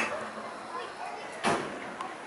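Indistinct background voices, with a single sharp knock about one and a half seconds in.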